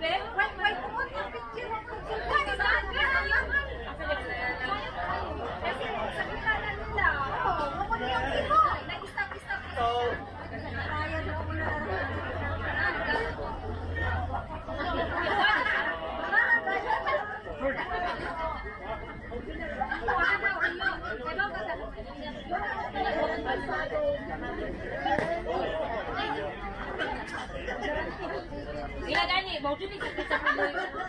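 Indistinct chatter of several voices talking over one another, continuing throughout.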